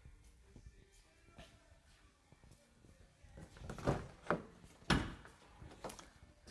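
Camper van rear door being opened: a run of sharp metal clunks and clicks from the latch and handle in the second half, the loudest about five seconds in.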